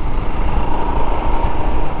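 Motorcycle riding through city traffic, heard from the rider's position: engine running steadily under wind and road noise, with a faint steady high tone joining about half a second in.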